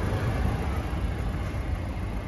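Wind buffeting a phone microphone outdoors: a steady, irregular low rumble under a faint even hiss.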